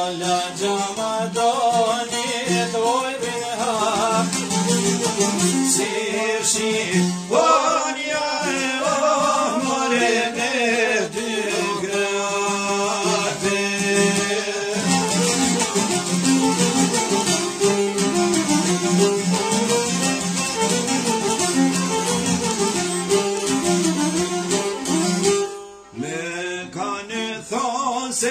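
Albanian folk music led by a plucked string instrument, with singing. The music dips out for a moment near the end and then resumes.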